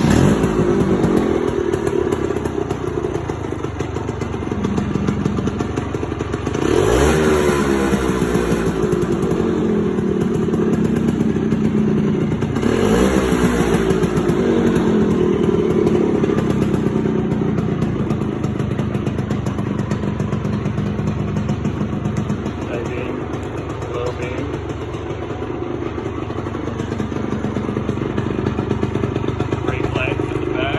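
Vespa 50 Special scooter's small two-stroke engine, fitted with a performance exhaust, starting up and running loudly. It is revved twice, at about seven and twelve seconds in, each time rising and falling back, then settles to a steady idle.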